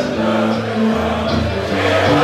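Live rock band playing loudly in a large tent, mostly held bass notes that step from one pitch to another, with little singing.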